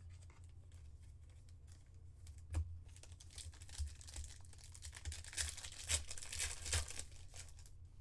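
Crinkling and tearing of a foil trading-card pack wrapper as a Panini Phoenix football pack is opened. There is a sharp click about two and a half seconds in, then a dense crackle over the next few seconds.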